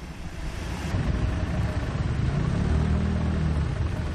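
Low rumble of a motor vehicle's engine running close by, growing louder about a second in and then holding steady.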